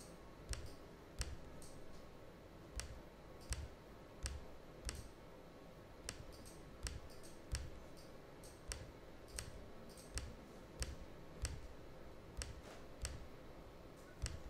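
Faint computer mouse button clicks, irregular at about one or two a second, as squares in an on-screen grid are ticked one by one.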